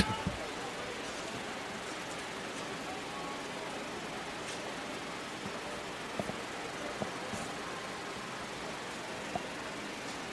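Steady, low ballpark ambience between pitches: an even background hiss, with a few faint knocks about six and seven seconds in and again near the end.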